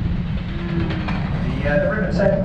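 Steady low rumble of a river tour boat's engine under way. A voice begins near the end.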